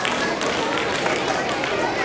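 Indistinct chatter of several women's voices in a hall, with no clear words.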